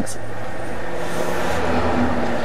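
Steady hiss with a faint low hum: the background noise of a microphone recording.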